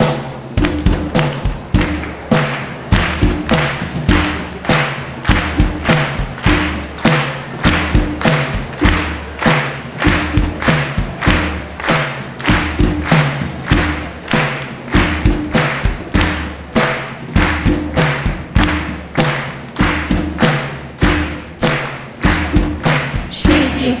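Live pop band playing an instrumental introduction: a steady drum beat of about two beats a second over bass and chords.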